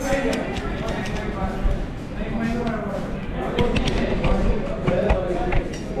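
Indistinct conversation at a restaurant table, with a few sharp clinks of cutlery on plates.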